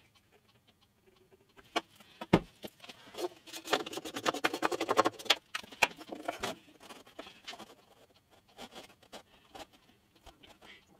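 Small wooden pieces handled on a wooden workbench during gluing: two sharp knocks about two seconds in, then a few seconds of rapid small clicks and rubbing, then scattered light taps as the piece is pressed into place.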